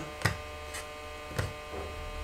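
Steady electrical hum and buzz on the recording, which the owner puts down to interference from his Crossfire radio link running at 500 milliwatts. Two short, sharp clicks come about a quarter second and a second and a half in.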